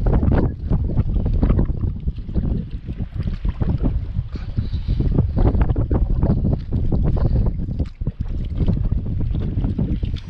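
Wind buffeting the camera's microphone: a loud low rumble that swells and drops in gusts.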